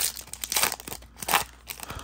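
Foil wrapper of a Topps Chrome Platinum baseball card pack being torn open by hand, crinkling in a few short, sharp tears, the loudest a little past the middle.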